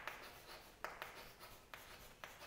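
Chalk writing on a blackboard: a few faint, short scratchy strokes, each starting sharply and fading quickly.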